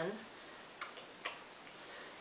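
Quiet room tone with two faint short clicks about a second in.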